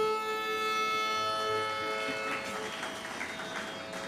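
Steady Carnatic concert drone sounding on its own in a pause of the music, its pitch unchanging. A lower held note fades out about two seconds in.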